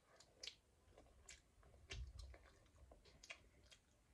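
Faint close mouth sounds of a girl chewing a bite of hotteok, a Korean filled pancake: soft, irregular clicks and smacks, a few a second.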